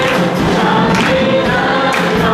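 A group of voices singing a Mandarin worship song together, with musical accompaniment, in sustained, steady phrases.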